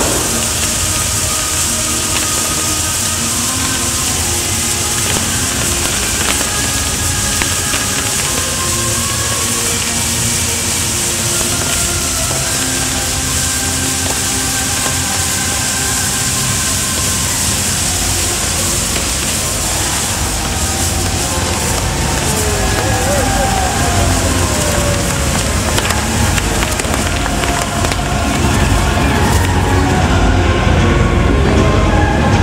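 Fireworks display: a steady loud hiss and crackle, with crowd voices and music mixed in.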